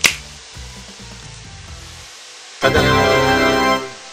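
A sharp finger-snap sound effect, then a quiet background music bed, then a loud held organ-like keyboard chord lasting about a second, starting a little past halfway.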